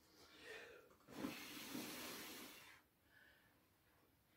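A person blowing out the candles on a birthday cake: one long breath of about a second and a half, starting about a second in.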